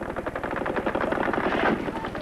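Automatic gunfire in combat, a continuous rapid burst of machine-gun fire that starts abruptly, from archival Vietnam War film.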